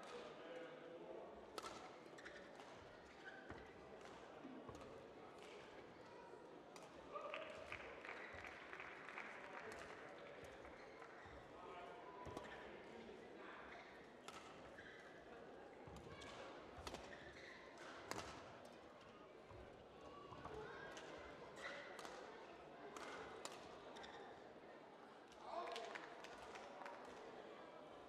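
Faint badminton rally: racket strings striking the shuttlecock again and again at irregular intervals, with thuds of footwork on the court.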